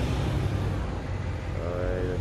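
Lorries and other road traffic going past, a steady low rumble.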